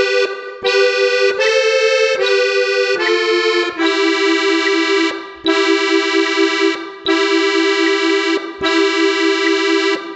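Piano accordion played slowly in two-note intervals: a few short notes, then the same pair held five times, each about a second and a half long with brief breaks between. Faint metronome ticks keep time at 75 beats a minute.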